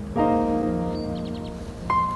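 Background piano music: a soft chord is struck a moment in and rings on, and a new note comes in near the end.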